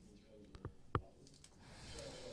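Two sharp clicks about a third of a second apart in a quiet room, with a faint voice in the background.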